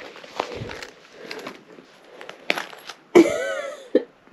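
An overstuffed wallet being handled and pushed shut: faint rustling with a few sharp clicks. Near the end comes a short, loud vocal sound, a grunt or exclamation rather than words.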